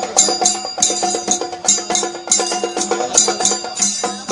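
Traditional festival percussion music: a busy run of rapid strikes with bright, ringing metallic overtones over a held pitched line, going on without a break.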